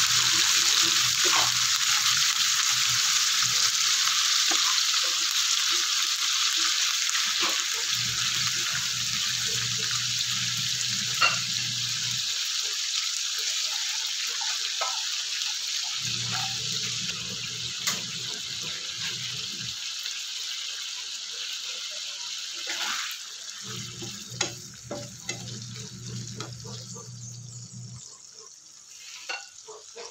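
Corned beef and garlic frying in oil in a nonstick pan: a steady sizzle that slowly dies down, with scattered taps and scrapes of a plastic spatula. A low hum comes and goes in four stretches.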